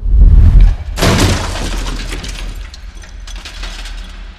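Sound effects of a sudden deep boom, then about a second in a loud shattering crash that trails off into scattered crackling debris.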